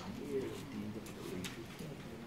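Low, indistinct murmur of conversation between a few people, with faint clicks and rustles among it.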